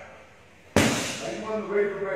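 A hard karate strike landing on a handheld kick shield: one sharp smack with a short ring-out about three-quarters of a second in.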